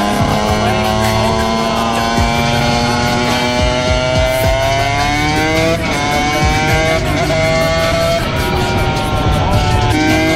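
Dirt bike engine under way, its pitch climbing slowly as the bike gathers speed, then dropping sharply at a gear change about six seconds in and again about eight seconds in.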